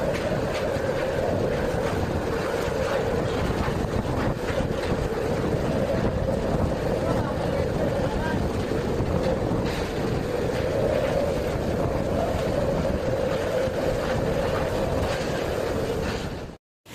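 Typhoon-force wind and heavy rain battering the microphone: a loud, steady rushing noise that swells and eases every few seconds.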